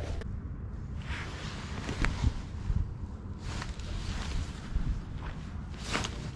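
Wind buffeting a GoPro's microphone in an uneven low rumble, with a few brief rushes of hiss and a faint click about two seconds in.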